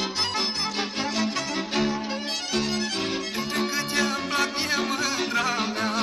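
Instrumental passage of a Transylvanian folk song: a fast, ornamented lead melody over a steady, pulsing chord accompaniment.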